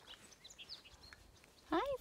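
A few faint, short bird chirps in the first half, then a woman's voice begins near the end.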